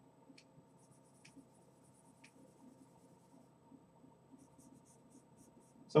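Faint scratching of vine charcoal strokes on drawing paper, with a few light ticks.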